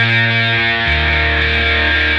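Rock music with sustained distorted electric guitar chords over a bass line. The bass note steps down to a lower pitch about a second in.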